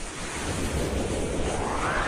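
Rising whoosh sound effect for an animated logo: a swell of rushing noise whose pitch climbs steadily through the two seconds.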